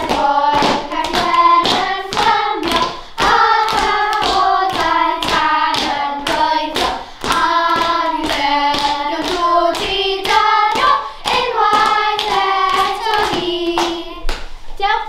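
Children singing a song together in unison, over a steady beat of sharp percussive strikes.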